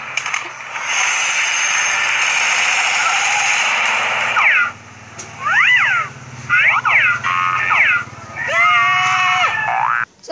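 Edited-video sound effects playing through a phone's speaker. A steady hiss lasts about four seconds, then comes a series of quick boing-like pitch swoops, each rising and falling.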